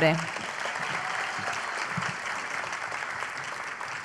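Audience applauding, a dense steady clapping that slowly fades.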